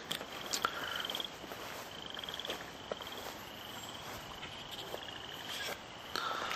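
Frogs calling: a short, high, pulsed trill repeated about six times, each trill under a second long, with a few faint clicks in the first second.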